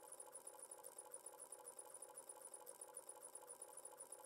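Near silence, with only a faint steady hum of a few thin tones.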